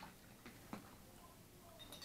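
Faint clinks of metal spoons against plates and a glass baby-food jar: three light taps in the first second, then a couple of faint high pings near the end.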